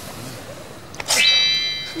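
A steady high-pitched electronic tone, like a buzzer or synth chime, starts sharply about a second in and holds one pitch for just under a second.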